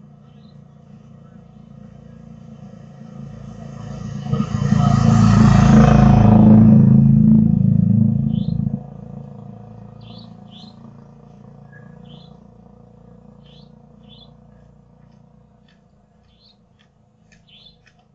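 A motorcycle passes along the street: its engine grows louder, is loudest from about five to eight seconds in, drops off sharply and then fades away. Faint short high chirps repeat about once a second behind it.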